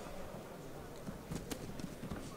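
Faint ring ambience of a kickboxing bout, with a few short sharp taps from the fighters' movement and strikes about a second and a half in.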